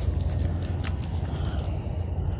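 Papery skins of a purple softneck garlic bulb crackling as it is broken apart into cloves by hand: a few short, sharp crackles over a steady low hum.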